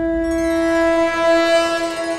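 A conch shell (shankh) blown in a long, steady horn-like note, with a second, brighter horn tone joining about a quarter second in.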